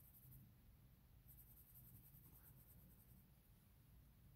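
Faint scratching of a coloured pencil shading on paper, in two spells with a short pause between, over near silence.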